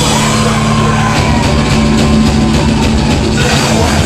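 A live rock band playing loud: distorted electric guitars and bass holding notes over a drum kit, with a run of quick, even drum and cymbal hits through the middle.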